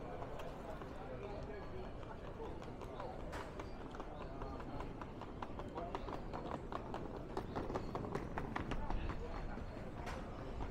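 Murmur of voices around an open-air kiosk, with a run of sharp taps like footsteps on stone paving that grows denser and louder in the second half.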